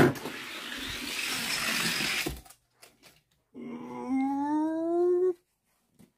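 Two die-cast toy cars rolling down a long downhill race track: a steady rushing rumble that starts suddenly and stops after about two and a half seconds. About a second later comes a drawn-out whine rising in pitch, lasting nearly two seconds.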